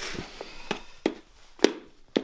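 A handful of sharp knocks or taps at uneven intervals, the loudest about a second and a half in.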